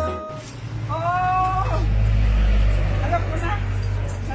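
Background music cuts off at the start, then a low engine rumble swells and fades, as from a passing vehicle. A short voiced sound comes about a second in and brief speech near the end.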